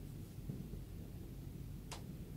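Hands pressing and rubbing over a cloth towel wrapped around a head in a Thai head massage: a soft, low rubbing of fabric, with one brief, sharp swish near the end.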